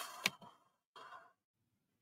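A person breathing out into a close microphone: two short breathy sighs about a second apart, the first with a sharp click in it.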